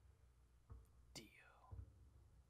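Near silence, with faint low thumps about once a second and one short squeak falling in pitch just past the middle.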